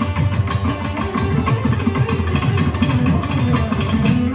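Veena played in rapid runs of low notes that bend and slide between pitches.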